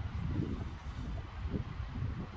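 Wind buffeting the microphone, a low, uneven rumble with a faint hiss above it.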